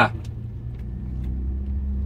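Audi A4 engine fitted with a downpipe and three-inch exhaust, heard from inside the cabin, pulling in first gear in the CVT's manual mode. It is a low drone that rises slowly in pitch and loudness as the car accelerates.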